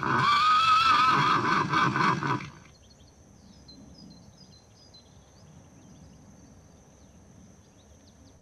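A horse whinnies loudly for about two and a half seconds, its pitch wavering up and down, then the sound drops to a quiet background with a few faint bird chirps.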